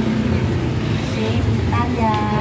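Steady low rumble of a motor vehicle engine running close by, with a voice starting up near the end.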